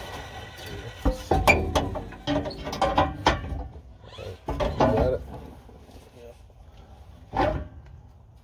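Metal exhaust pipe knocking and clanking several times as a Y-pipe is held up and fitted against the exhaust under a truck, with muffled voices mixed in.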